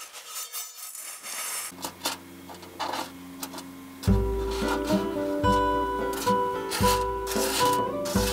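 Cardoon seeds rustling and rattling faintly against a metal dish as it is shaken to winnow them. Background music fades in and becomes much louder about four seconds in.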